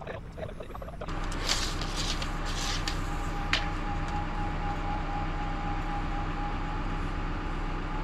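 Steady engine hum with a held whine from the telehandler holding the beam, starting about a second in, with light rustling and clicking as a tape measure is handled against the beam and one sharp click about three and a half seconds in.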